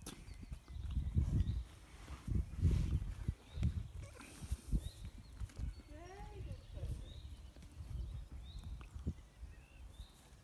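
Muffled footfalls of a pony walking on a loose arena surface, under irregular low rumbling that is strongest in the first half. Short high chirps come now and then in the second half.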